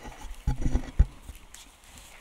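Handling noise on a close desk microphone: a few dull knocks and small bumps as a headset is picked up and fitted, the loudest knock about a second in.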